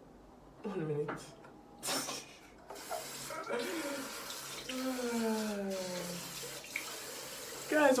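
Bathroom sink tap running steadily into the basin as water is scooped onto the face for rinsing, starting about three seconds in. Before it, a few short splashes.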